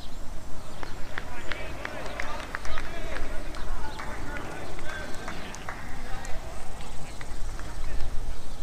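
Open-air ambience on a cricket field: wind rumbling on the microphone, with distant players' voices calling across the ground and a scatter of short clicks.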